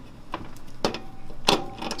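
A few sharp clicks and taps, about four in two seconds, from a screwdriver working at the screws of a computer power supply's metal casing.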